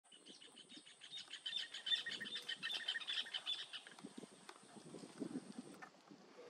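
A bird chirping in a quick run of repeated short notes, about three or four a second, that fades out after about three and a half seconds. A thin, steady high-pitched tone runs underneath and stops just before the end.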